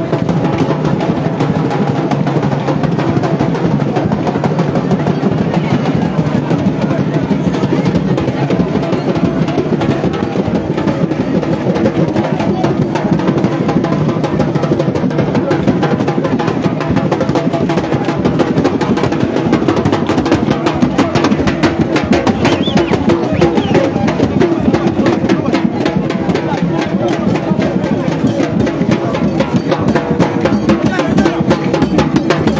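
Live drumming with fast, dense percussion strikes, mixed with the voices of a large crowd.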